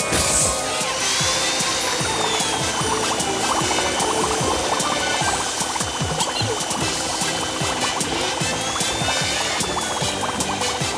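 Cartoon bubble-wash sound effects: a burst of spray at the start, then a dense stream of bubbling and popping as the wash fills with foam, over background music.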